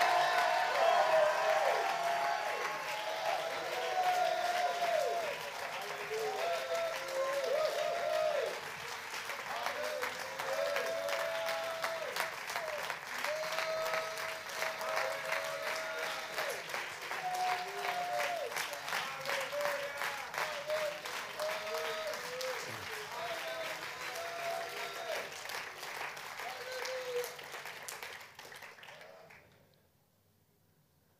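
Congregation applauding, with many voices calling out over the clapping. The applause fades slowly and stops shortly before the end.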